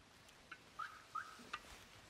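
Two short, faint bird chirps about a second apart, near the middle, with a couple of light clicks around them.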